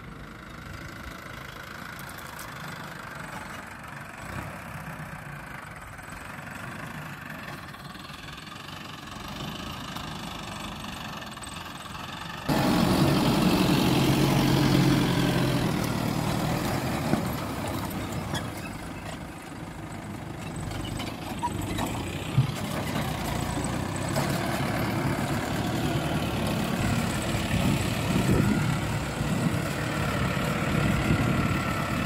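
Farm tractor's diesel engine running under load while pulling a disc plough through the soil. It is faint and distant at first, then much louder after a sudden jump about twelve seconds in, with two brief sharp knocks later on.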